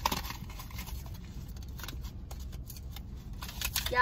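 Small plastic chapsticks being unwrapped and handled, giving scattered clicks and crinkles over a low steady rumble.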